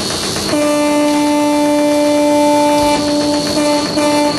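Circuit-bent electronics played live through an amplifier: gritty, crackling noise, then about half a second in a loud, steady, buzzing drone tone sets in over the noise. The tone breaks briefly near the end.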